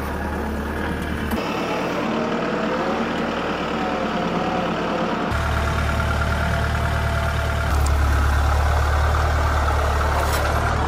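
Compact tractor engine running steadily with a low hum while moving round hay bales. The low hum drops away for a few seconds, with a thinner whine in its place, then returns and grows louder near the end.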